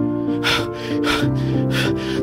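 Background music of sustained low chords that shift about halfway through, with two short breathy gasps over it.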